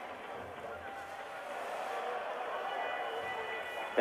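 Ice hockey arena crowd noise: a steady murmur of many voices that swells slightly about halfway through, heard on an old, muffled TV broadcast soundtrack.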